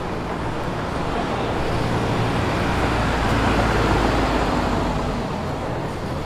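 A car driving past on a cobblestone street, its noise growing to a peak about three to four seconds in and then fading away.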